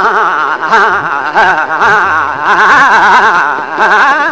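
Male Hindustani classical vocalist singing a sustained, loud phrase full of rapid wavering ornaments, with tabla playing underneath, its bass drum gliding in pitch.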